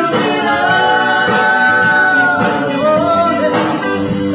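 A live rock band plays while a female lead singer sings into a microphone. She holds one long note for about two seconds, then sings a shorter phrase, over electric guitar, bass guitar and drums.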